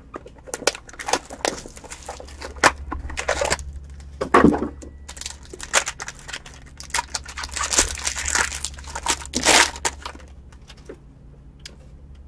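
Crinkling and tearing of wrapping as a trading-card box and its foil pack are opened, with scattered clicks and rustles from handling the box. The loudest stretch of tearing comes in the second half and quiets near the end.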